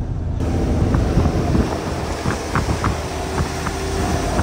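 Rushing wind and road noise from a moving Land Rover Defender with a side window open, over a low engine and tyre rumble; the hiss comes in suddenly about half a second in, with a few faint ticks.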